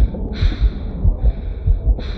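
Heartbeat sound effect in a metal album's intro track: loud, deep thumps, often in quick pairs, repeating about every half second. A hissing atmospheric layer comes and goes above it.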